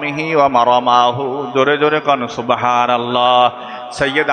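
A man's voice chanting a recitation in a slow, melodic, drawn-out style, holding one long note near the end.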